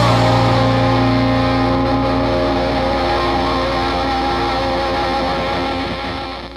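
Instrumental break in a rock song: sustained guitar chords ringing out and slowly dying away, with no drum hits and no singing. The sound drops in level and thins out near the end.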